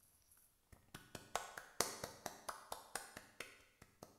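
One person clapping, a run of about fourteen quick, even claps at roughly four to five a second. It starts under a second in and fades near the end.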